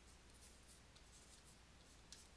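Faint scratching and tapping of a stylus writing on a drawing tablet, a few short strokes over a low steady hum.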